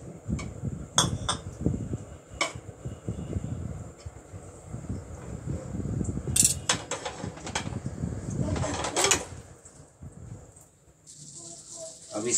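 Kitchen utensils and dishes clinking and knocking against a frying pan, a few sharp clinks. Near the end a steady sizzle starts as egg mixture hits the hot buttered pan.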